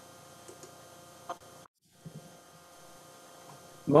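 Faint steady electrical hum made of several steady tones in a video-call audio feed, with a small click about a second in and a brief dropout to total silence shortly after.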